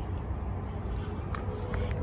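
Steady low outdoor background rumble, with a few faint clicks about one and a half seconds in.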